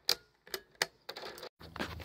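Circuit breakers in an old panel snapped on one after another: three sharp clicks in the first second. From about a second and a half in, a steady low electrical hum sets in as the test circuit is energised.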